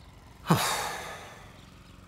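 A cartoon man's sigh: one breathy exhale, its pitch falling, starting about half a second in and trailing off over about a second.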